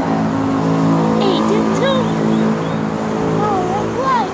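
Steady road traffic noise from a highway, with a continuous low engine hum.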